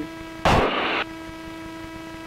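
Steady electrical hum with an evenly spaced set of tones on the aircraft's intercom audio, broken about half a second in by a loud burst of hiss lasting about half a second.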